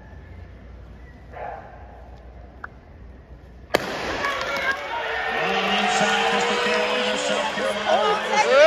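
A single sharp starting-gun crack about four seconds in, then a stadium crowd cheering and shouting as the relay race starts, the noise building.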